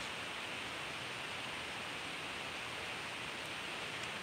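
Steady background hiss during a pause in talking, even throughout with no other events.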